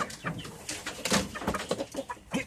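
Chickens giving short low clucks amid scuffling and knocking in a wire cage while a rooster is being caught.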